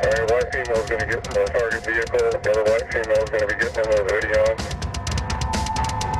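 Tense, driving background music with rapid drum hits, with a voice speaking over it for the first four and a half seconds; held notes take over near the end.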